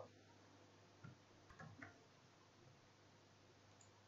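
Near silence with a few faint clicks of computer keyboard keys, one about a second in and a quick cluster of about three around a second and a half in.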